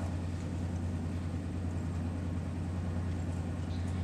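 Steady low room hum with a faint hiss above it, unchanging throughout.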